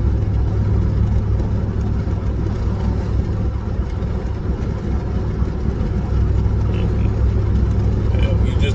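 Steady low rumble of a car heard from inside the cabin: engine and road noise at an even level.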